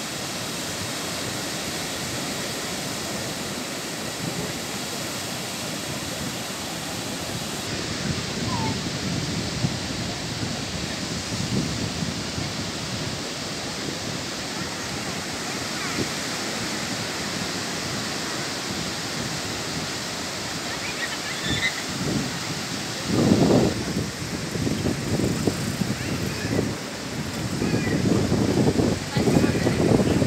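Steady, even rush of ocean surf breaking on a sandy beach. Near the end, louder rumbling gusts of wind hit the microphone.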